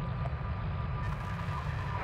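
A steady low rumble under a hiss of open-channel radio static, with faint steady tones in it; about a second in, the hiss turns brighter.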